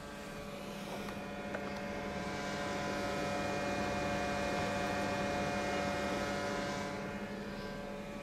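A steady hum, with the noise of a passing vehicle swelling over several seconds and fading away.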